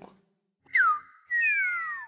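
Cartoon whistle sound effects: a short falling whistle, then two falling whistle tones sounding together through the second half.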